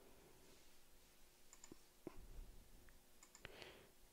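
Near silence, with a few faint computer mouse clicks about halfway through and near the end.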